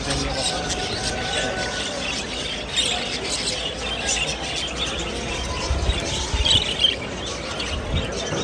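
A flock of caged budgerigars chattering and chirping together, many short squawky calls overlapping, over a constant background murmur of voices.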